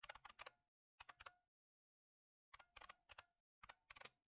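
Faint computer keyboard typing: four short bursts of rapid key clicks with pauses between them.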